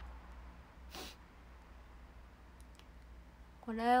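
Quiet room tone with a low steady hum, a single short soft noise about a second in, and a woman starting to speak near the end.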